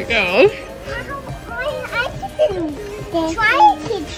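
A young child babbling and squealing without words, the voice sliding up and down in pitch, with two louder high squeals: one right at the start and one about three and a half seconds in. Background music plays underneath.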